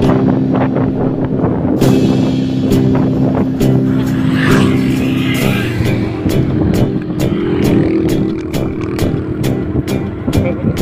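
A motorcycle running along a road, mixed with background music. The music has a regular beat in the second half.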